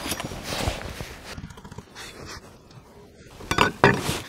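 Handling noise: rustling and light clinks of cooking gear, then a few sharp plastic cracks near the end as a vacuum pack of streaky bacon is pulled open.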